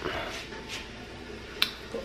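A single sharp click about one and a half seconds in, with a fainter one before it, over quiet kitchen room noise.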